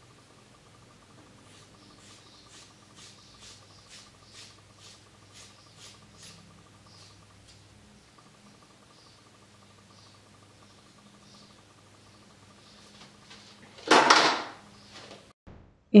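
Hairdressing scissors snipping through a thick bundle of long hair: a series of crisp snips, about two a second, thinning out into a few fainter ones. A short, louder burst of noise comes near the end.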